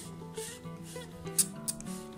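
About four short squirts of a hand spray bottle wetting dry Phalaenopsis orchid roots, with a sharp click of the trigger among them, over soft acoustic guitar music.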